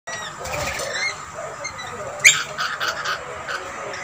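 Rainbow lorikeets chirping and screeching, with short rising calls in the first half. There is one loud, sharp screech a little past halfway, followed by a quick run of chattering calls.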